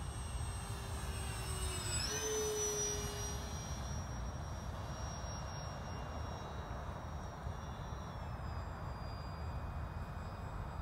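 Radio-controlled OV-10 Bronco scale model flying overhead: the high whine of its twin motors and propellers. The pitch jumps up about two seconds in, then glides slowly downward as the plane passes.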